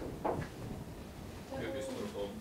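A faint, distant voice from the audience answering the lecturer's question, heard over quiet room tone in a lecture hall.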